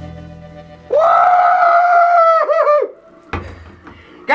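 A music track fading out, then about a second in a person's long high-pitched yell, held for about two seconds before it wavers and breaks off, followed by a brief knock near the end.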